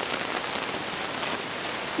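A steady, even hiss with no other sound in it: the background noise of the recording during a pause in speech.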